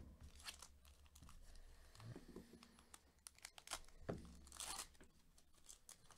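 Faint crinkling of a trading-card pack's wrapper as it is handled and torn open, with a louder tearing rasp lasting about half a second a little before the end.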